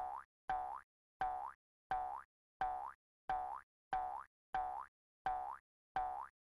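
A cartoon 'boing' sound effect repeating on a loop, about nine times at an even pace of roughly one and a half per second. Each boing is a short springy tone that glides upward in pitch.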